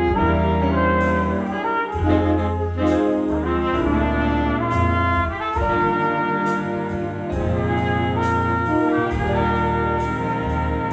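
A big band playing live: saxophones, trumpets and trombones holding chords over piano and a bass line, with a steady beat ticking on top.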